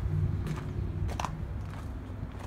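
Footsteps on gravel: a few separate steps over a low steady rumble.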